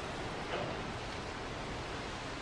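Steady background noise, an even hiss with no distinct sounds in it.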